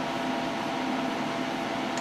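Steady background hum and hiss, like a running fan, with a few faint steady tones in it.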